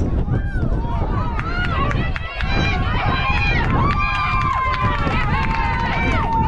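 Spectators at a youth baseball game yelling and cheering, many voices shouting over one another, with one long held shout near the end as a runner slides into home plate.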